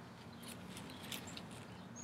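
Faint scattered clicks and rustles, a few ticks about half a second apart, as a lawnmower's dipstick is pulled from the oil tube and handled with a paper towel.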